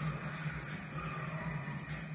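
Crickets chirping steadily over a low steady hum.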